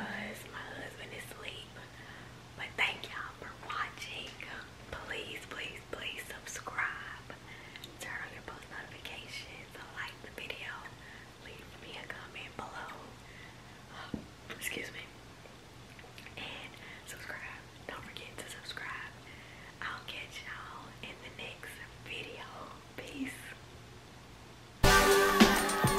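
A woman whispering to the camera, with a faint steady low hum underneath.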